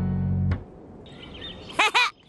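The held final chord of a music sting cuts off about half a second in, giving way to soft birdsong chirps in cartoon ambience, with a louder chirping call with sharply sliding pitch near the end.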